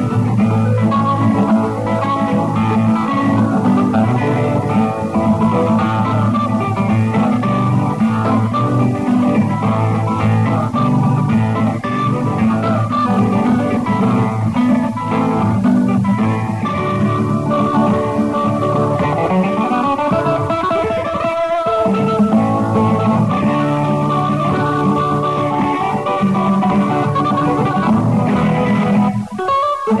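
Instrumental guitar music: plucked guitars playing a melodic piece without singing. The music dips briefly near the end.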